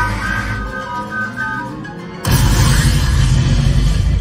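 Cartoon soundtrack music through the theatre speakers, then about two seconds in a sudden loud cartoon explosion sound effect: a deep boom with a rushing crash that lasts about two seconds.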